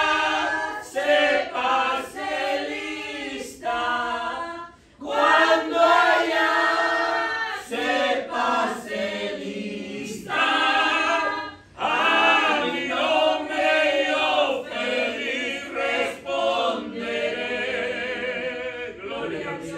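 A man singing a hymn, unaccompanied, in a full impassioned voice, with two short breaks for breath between phrases.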